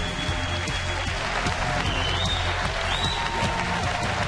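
A large audience applauding, with television news theme music playing over it.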